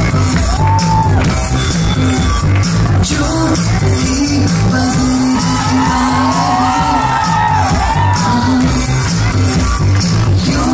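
Loud Bollywood dance music with a heavy, steady bass beat and a singing voice, the singing most prominent in the second half.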